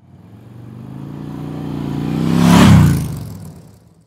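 A motorcycle engine revving. The sound builds steadily to a loud peak about two and a half seconds in, then quickly dies away.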